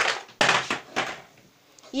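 Handling noise: a sharp knock, then a few short scuffing noises.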